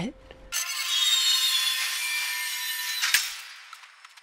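Film soundtrack: a steady high hiss laced with thin whistling tones, starting suddenly and fading away near the end, with a single sharp click about three seconds in.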